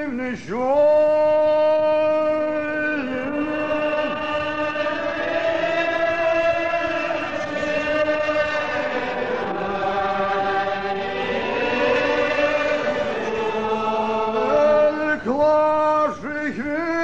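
Congregation singing a Gaelic psalm in the slow, unaccompanied style: long drawn-out notes sliding from pitch to pitch, the many voices spreading apart into a blurred mass in the middle. Near the end a single precentor's voice gives out the next line with quick ornamented turns. The sound comes through an old cassette recording with the top end cut off.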